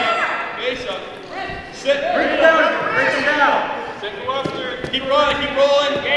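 People's voices calling out and talking, not picked up as words, with a single brief thud about four and a half seconds in.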